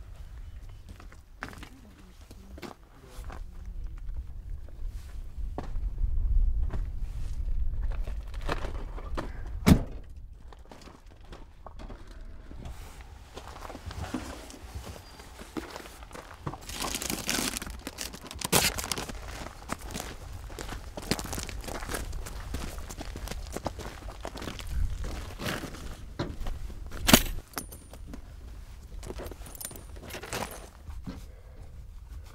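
Camping gear being handled and set down: scattered rustling of fabric and bags, light thuds and clinks, with two sharp knocks about ten seconds in and near the end. A low rumble lasts several seconds near the start.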